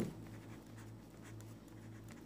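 Pen scratching faintly on paper as words are handwritten, in a series of short strokes.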